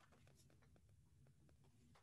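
Near silence: faint room tone with a low hum and a few faint ticks.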